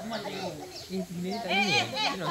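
Several people's voices talking over one another, with a loud, high, wavering call from one voice about one and a half seconds in.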